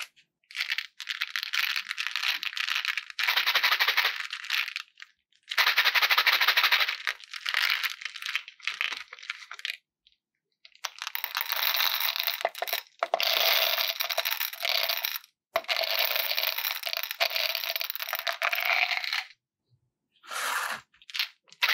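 Small round hard candies pouring out of a glass jar into a ceramic dish of candies, a dense clattering rattle as they tumble against glass and each other. It comes in about seven pours of one to three seconds, each broken off by a short silent gap.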